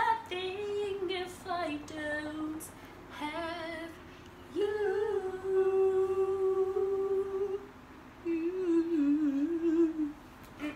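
A girl's voice humming and singing a snatch of a song unaccompanied, in short phrases, with one long held note in the middle and a wavering tune near the end.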